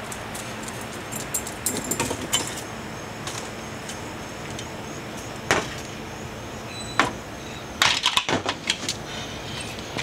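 Irregular light clicks and knocks from a dog moving with a long branch held crosswise in its mouth, with its collar tag jingling. A quick run of knocks comes near the end.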